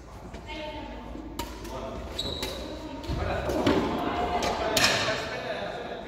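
Doubles badminton rally in a large echoing hall: sharp racket hits on the shuttlecock and footfalls on the wooden court floor, with players' voices calling out in the second half.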